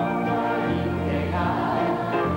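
A large chorus singing together in unison over a band accompaniment, with held notes and a steady bass.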